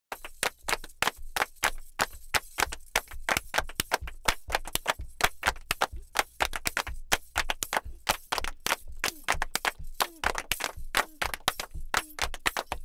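Fast rhythmic percussion of sharp claps or knocks, several hits a second, as an opening music bed; a wavering pitched voice or instrument comes in near the end.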